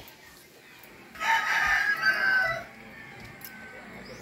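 A rooster crowing once, a single long call of about a second and a half near the middle.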